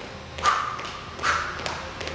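Footfalls of high knees on a rubber gym floor: two thuds about a second apart, with a lighter tap after them.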